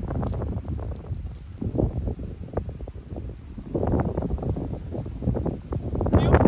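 Wind buffeting the microphone in an uneven low rumble, with scattered rustles and small clicks. A louder gust comes a little past the middle.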